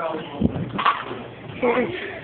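Indistinct voices talking, with two sharp knocks about half a second and just under a second in.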